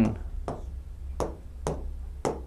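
Pen tapping against an interactive touchscreen while writing numbers: three short sharp taps, over a steady low hum.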